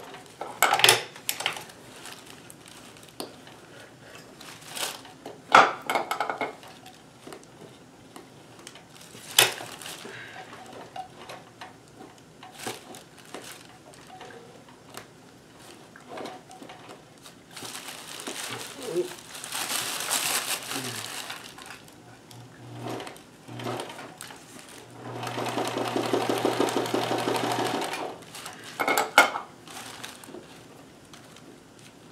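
Kenmore 158.1914 oscillating-hook sewing machine stitching free motion embroidery in two runs of a few seconds each in the second half, rapid needle strokes over a steady hum. Scattered sharp clicks and knocks come before and after the runs.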